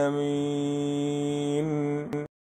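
A male Quran reciter holds the last note of the verse ending 'ʿani l-ʿālamīn' on one steady, unwavering pitch.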